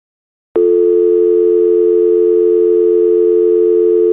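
A loud, steady telephone dial tone starts abruptly about half a second in and holds unbroken, two low notes sounding together.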